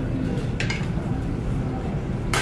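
Steady low rumble of kitchen background noise, with one brief soft noise about half a second in.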